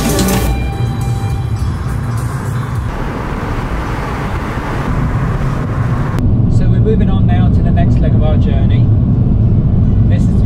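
Road and engine rumble inside a moving car's cabin, with a broad hiss of wind and tyre noise through most of the first half. It changes abruptly about six seconds in to a heavier low drone with faint voices over it. A music track ends just after the start.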